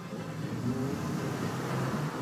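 A vehicle's engine picking up speed as it drives, with a steady low hum under rising road and wind noise.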